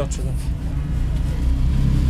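A low rumble that swells over the second half, after a few words of speech right at the start.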